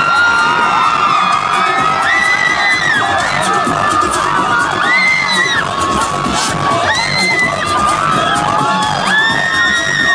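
Concert crowd cheering and shouting over loud live music from the stage, with no let-up.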